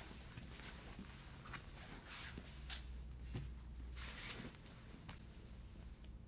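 Faint rustling and brushing of grappling: rash guards, spats and skin sliding and pressing on foam mats in a string of short swishes as two bodies shift position, over a low room hum.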